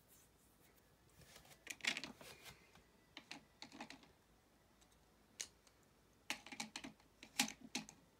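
Faint light clicks and taps in a few irregular clusters, the loudest group coming near the end.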